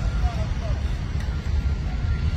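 Steady low rumble of a railway ballast hopper wagon discharging crushed-stone ballast onto the track.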